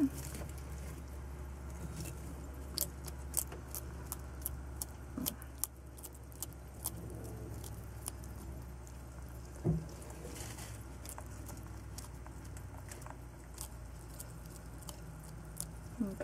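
Blue tegu eating feeder roaches from a glass jar: scattered sharp clicks and ticks of the feeding, with one louder knock about ten seconds in, over a steady low hum.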